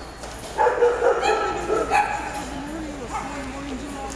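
Dog barking and yipping in a run of high calls, starting about half a second in, as it runs an agility course.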